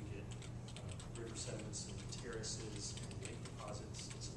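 Computer keyboard typing, a run of light clicks, under a man lecturing in the room, with a steady low hum.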